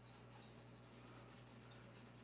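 Faint scratching of a stylus rubbed quickly back and forth on a drawing tablet as handwriting is erased, in a run of short strokes.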